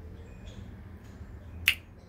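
A single sharp, snap-like click about one and a half seconds in, over a faint low steady rumble of background noise.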